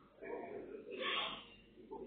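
A person's voice: a short, breathy exclamation, loudest about a second in.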